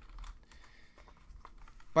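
Faint, scattered taps on a computer keyboard.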